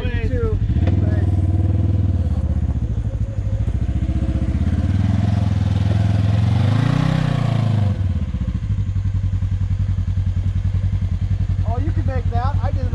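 Polaris RZR side-by-side's engine revving as it pulls away and climbs the dirt trail, rising in pitch to a peak about seven seconds in, then falling away at about eight seconds. Under it, another engine idles steadily close by.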